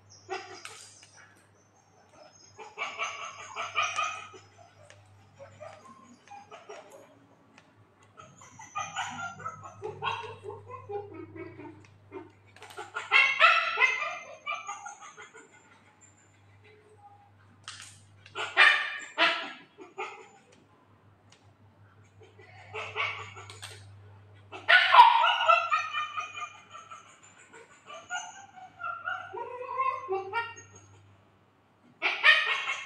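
A dog barking in short bouts every few seconds, about six bouts in all, with quiet gaps between them and a faint low hum underneath.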